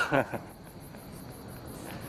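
Crickets chirping: a fast, even, high-pitched pulse over a steady hiss. A man's voice trails off in the first half-second.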